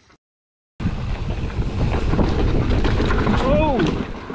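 Wind buffeting the microphone of a camera on a mountain bike riding downhill: a loud, dense, low rush that starts abruptly after a brief dead-silent gap. Near the end a short cry rises and falls in pitch.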